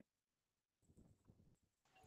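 Near silence: a pause in an online video call.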